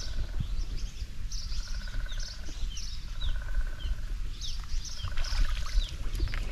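Wild birds calling: a short buzzy trill repeated about every two seconds, mixed with quick falling chirps, over a steady low rumble.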